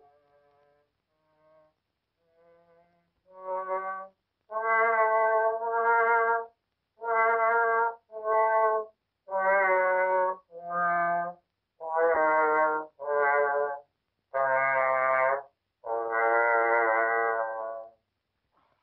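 A trombone playing a slow tune in separate held notes, about a dozen, with short gaps between them. A few faint notes come first, and the loud notes begin about four seconds in.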